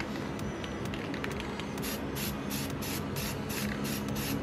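Aerosol spray paint can hissing in short, quick bursts, about three a second, starting about two seconds in.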